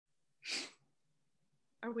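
A person's single short, explosive burst of breath about half a second in, noisy and sharp. A woman starts speaking near the end.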